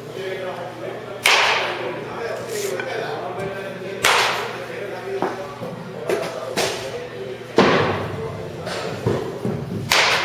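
Baseball bat striking balls in batting practice: four sharp cracks about three seconds apart, each ringing out in a large hall, with fainter knocks between them.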